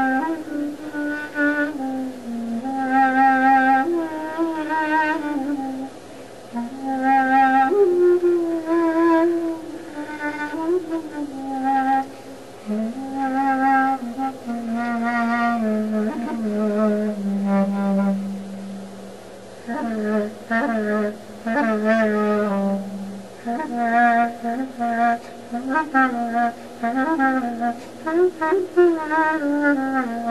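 Solo clarinet in Greek folk (klarino) style playing a heavily ornamented melody. It moves in phrases with pitch bends, quick turns and a wavering vibrato, and about halfway through it holds one long note that sags slowly in pitch.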